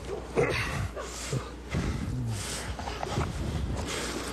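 A man's strained grunts and groans, short cries falling in pitch, with scuffling and heavy breathing, during a struggle as he is held on the ground.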